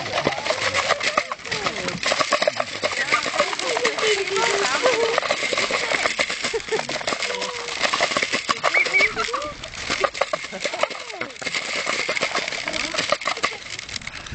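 Domestic ducks feeding together from a plastic bowl of grain: a fast, busy clatter of bills dabbling in the feed, mixed with quacks and squeaky calls.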